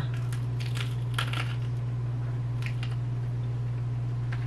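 A few faint clicks and crinkles from small objects being handled, over a steady low hum.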